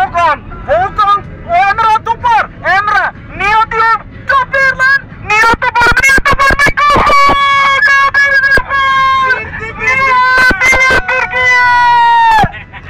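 A man shouting through a handheld megaphone in a van's cabin. It opens with a run of short calls that rise and fall in pitch, then turns to long, drawn-out held calls from about halfway through.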